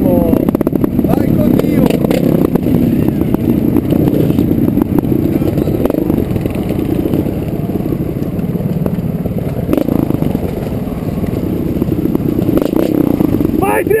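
Trials motorcycle engine running at low revs as the bike picks its way along a rocky dirt trail behind another rider, with occasional clatter from the bike over the rough ground.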